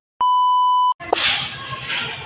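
TV colour-bars test-tone sound effect: one steady, high beep at about 1 kHz lasting under a second, which cuts off abruptly. About a second in, a noisy background takes over.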